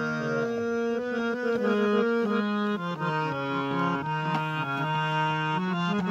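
Harmonium playing a melody, its reeds sounding steady held notes that step from one to the next over sustained lower notes.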